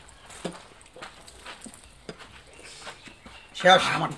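Faint swallowing and small clicks as coconut water is drunk straight from green coconuts, then a man's voice breaks in loudly near the end.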